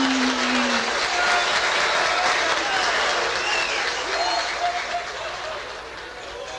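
Audience applauding, with a few voices calling out over it. The applause fades away over the last couple of seconds.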